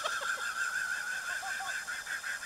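A high, rapidly pulsing sound effect from a radio show intro, played through a portable radio's small speaker.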